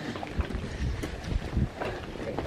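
Wind buffeting the camera microphone outdoors: a gusty low rumble that comes in three or four pushes.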